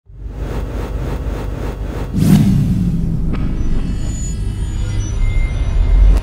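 Cinematic trailer-style sound design: a deep rumble with a fast pulsing beat, a sweeping whoosh and low swell a little over two seconds in, a sharp hit about a second later, then a sustained low drone.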